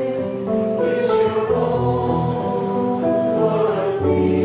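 A choir singing a slow hymn in long held notes.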